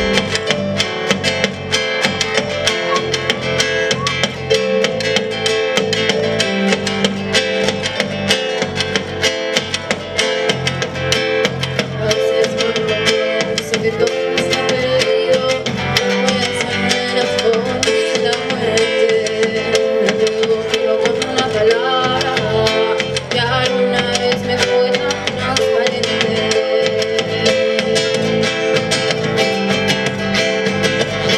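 A live band playing a popular song on drum kit, electric guitar and acoustic guitar.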